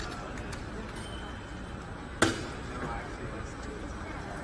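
Faint, indistinct voices over a steady hissy background, with one sharp knock a little past halfway.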